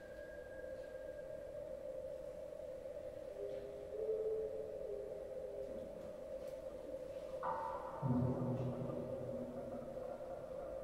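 Slow, quiet contemporary chamber music for acoustic ensemble and live electronics, made of long held notes. A steady tone sounds throughout and a second long note comes in and fades away. Then a cluster of higher notes enters about seven and a half seconds in, and louder low notes join about a second later.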